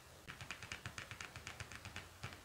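A quick, even run of faint clicks, about ten a second, as fingers tap or flick the edges of tarot cards.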